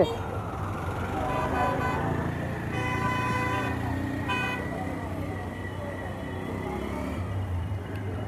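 Street traffic noise with a vehicle horn tooting about three seconds in and again briefly a second later.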